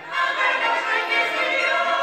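Russian folk choir of women's and men's voices singing together; after a momentary breath at the very start, a new full-voiced phrase begins and is held.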